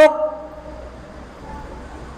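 A man's voice ends a word through a microphone, its tone lingering and fading in the room's echo over about a second, followed by a pause with only a faint steady low hum.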